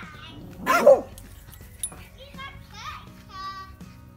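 A dog giving a single short, loud bark about a second in while playing rough with another dog.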